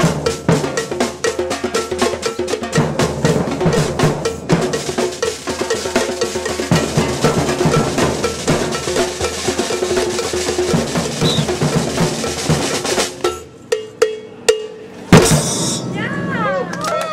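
Street percussion band drumming a fast, dense rhythm on surdo bass drums, snare drums and cymbals. About thirteen seconds in the groove drops away to a few single hits, and a very loud stroke comes shortly before the end.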